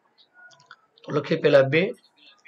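A few faint clicks in the first second, then a man speaking for the rest.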